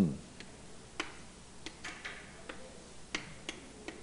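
Chalk on a blackboard while lines are drawn: faint, irregular clicks and short scratchy strokes, about one every half second to a second.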